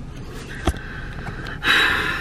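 Handling noise as a phone camera is moved in close behind a car's steering wheel, with one sharp click about two-thirds of a second in and a short breathy rush of noise near the end.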